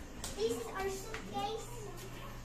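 A young girl's high-pitched voice in several short playful utterances, not clear words.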